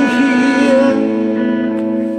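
Electric guitar letting a chord ring, with a single melody note wavering in pitch above it during the first second, then the chord sustaining on its own.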